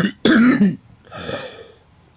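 A woman coughing, two harsh coughs in quick succession, followed by a softer breath.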